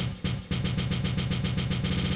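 Electronic dance music loop made with the Launchpad for iOS app: a pounding kick drum that, about half a second in, breaks into a fast stuttering roll of repeated hits.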